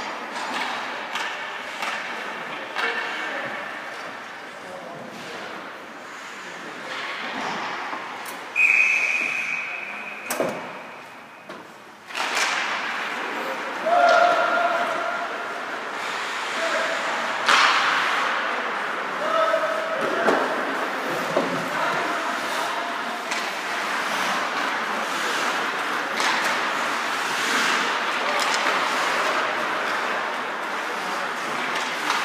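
Ice hockey game in an indoor rink: a referee's whistle sounds once, a steady high note of about a second and a half, roughly nine seconds in. Around it are sharp knocks of sticks and puck against the boards and short shouts from players and spectators.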